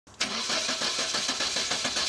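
A car engine starts up suddenly and runs, with an even pulse of several beats a second.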